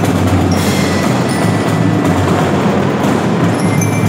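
A youth marching percussion corps (fanfarra) playing: snare drums, bass drums and cymbals in a steady, dense rhythm, with short high ringing notes over the drums.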